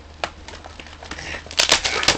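Plastic toy-blaster packaging crinkling and clicking under the hands as the foam shells and darts are worked free, with a few scattered clicks and then a short burst of louder rustling near the end.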